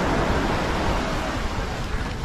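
Surf breaking steadily on a sandy beach, mixed with wind rumbling on the microphone.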